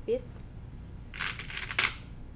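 Quilted fabric and a fabric strap rustling as they are handled and pressed together, ending in a sharp click about two seconds in.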